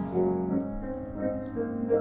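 Upright piano played slowly, a few notes at a time, each left to ring on under the next.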